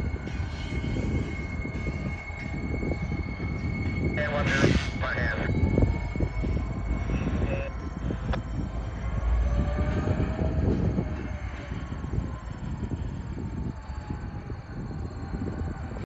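Two EMD SD40N diesel-electric locomotives running light past at a distance, their 16-cylinder two-stroke EMD 645 engines giving a steady low rumble. A short higher-pitched burst comes about four and a half seconds in.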